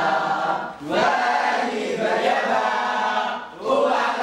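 A small group of young voices singing together unaccompanied, in held phrases with short breaks about a second in and shortly before the end.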